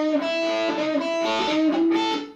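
Gibson Les Paul electric guitar playing an improvised A minor pentatonic lead lick: a few sustained single notes, with one note bent up in pitch near the end.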